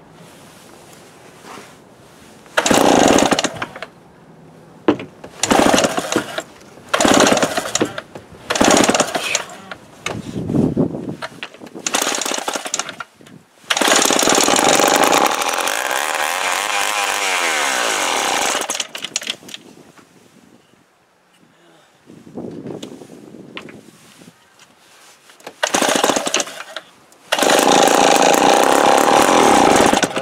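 Two-stroke engine of a Remington Super 754 chainsaw being pull-started. It fires in several short bursts, then catches and runs for about five seconds with its speed rising and falling, and dies. It catches again for a few seconds near the end.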